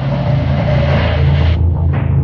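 Experimental electronic music: steady, low droning tones under a wash of noise that cuts off about one and a half seconds in.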